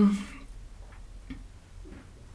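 Three faint light taps, spaced roughly half a second apart, as oracle cards are handled on a tabletop.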